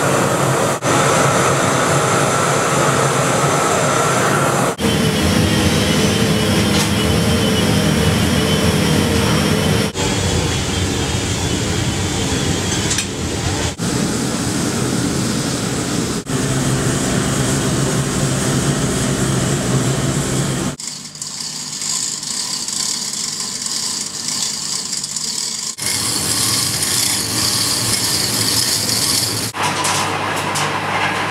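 Steady roar of a gas burner firing a bronze-melting furnace, its tone changing abruptly every few seconds.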